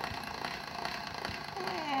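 Hand-cranked chrome pasta machine turning slowly as a thick sheet of fondant is pressed through its rollers on the widest setting; the thickness of the sheet is what makes it go through so slowly.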